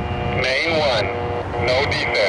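Train horn sounding a chord of several notes in two blasts. The first breaks off about a second in, and the second starts half a second later.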